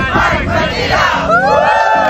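A group of young people shouting together in a cheer, many voices overlapping, rising into one long held shout near the end.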